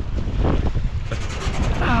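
Wind buffeting the microphone: an uneven low rumbling rush with no steady pitch.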